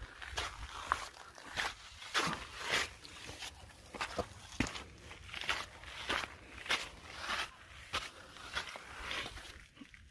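Footsteps of a hiker walking on a trail: a run of crunching steps at a steady walking pace.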